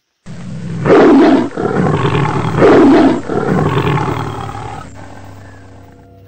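Big-cat roar sound effect: two loud roars about a second and a half apart, cutting in suddenly and then dying away over the next couple of seconds.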